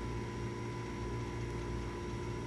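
Steady background hum and hiss with a faint constant high tone and no other events: the recording's room tone.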